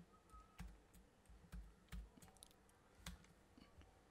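Near silence broken by about six faint, short clicks scattered over a few seconds, from handling the computer's input device.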